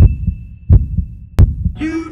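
Heartbeat sound effect: three deep double thumps, lub-dub, about two-thirds of a second apart. A high chime tone dies away in the first moment, and music with singing comes in near the end.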